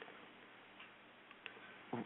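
Near silence: faint background hiss with a few soft clicks.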